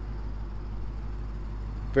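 Steady low rumble of an idling car engine, even and unchanging, under a faint hiss.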